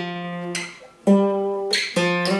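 Ibanez PF15ECE acoustic guitar: a single note plucked on the fourth (D) string rings and fades, then a second, slightly higher note on the same string is plucked about a second in and rings on. These are the first notes of a jazzy lead run in the song's solo.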